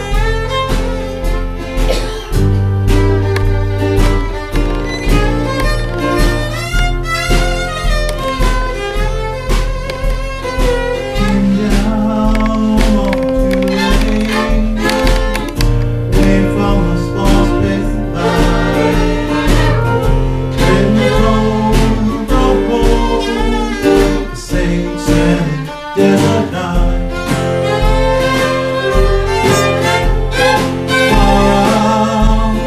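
Live acoustic band playing: two fiddles carry the melody with vibrato over acoustic guitar, with a drum kit keeping a steady kick-drum beat.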